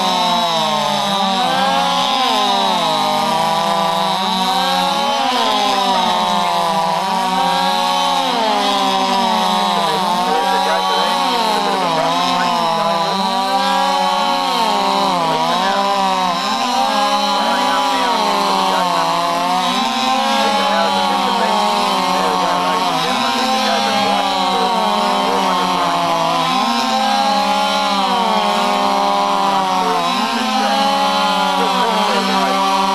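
Chainsaws running flat out through upright logs in a chainsaw race, the engine pitch dropping as each cut bites and rising again as it clears, over and over.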